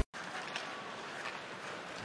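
Ice hockey arena ambience: a steady crowd murmur with faint scrapes and clicks of skates and sticks on the ice.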